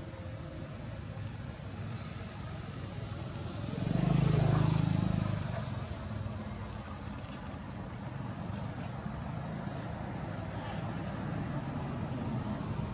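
Steady outdoor background noise, with a motor vehicle's engine swelling up about four seconds in and fading away by about six seconds, as it passes by.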